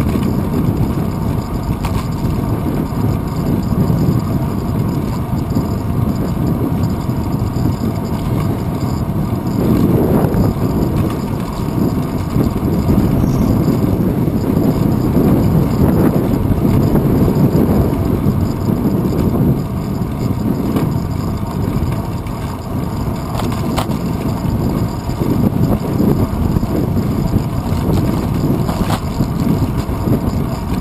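Wind buffeting the microphone of a bicycle-mounted GoPro Hero 2 while riding, a steady low rumble that swells and eases with speed, with road and traffic noise underneath.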